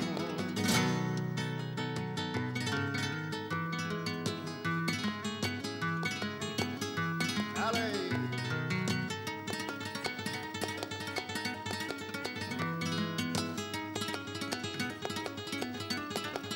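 Flamenco guitar playing a solo passage between sung verses: quick plucked runs and strummed chords on a Spanish guitar.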